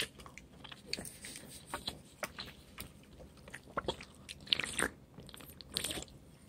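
Faint chewing and biting mouth sounds of someone eating, coming as scattered small clicks and short bursts.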